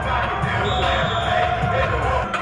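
Football players shouting during a live scrimmage play, with repeated low thuds of bodies and pads colliding.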